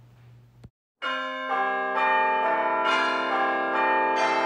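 A faint room hum, then, after a brief dead gap about a second in, bells start ringing loudly. New notes join every half second to a second and keep ringing over one another.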